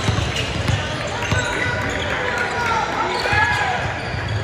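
Basketball dribbled on a hardwood gym floor: a steady run of low thumps, with people talking in the background.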